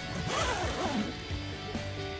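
A tent zipper being pulled, a scratchy sound that rises and falls in pitch during the first second. Background music with steady low notes plays underneath.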